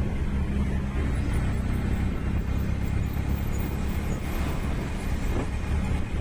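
Steady engine drone and road noise from a moving vehicle as it is driven along the road, low and continuous with no change in pace.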